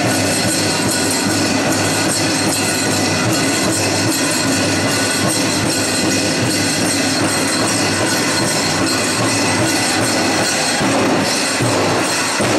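A powwow drum group's Grand Entry song: a loud, dense and steady wash of drumming and singing, with the jingling of dancers' regalia, echoing in a gymnasium.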